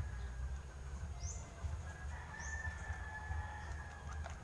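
A rooster crowing faintly in the distance: one long drawn-out call through the middle of the clip. Two short high chirps come before and during it, over a low steady rumble.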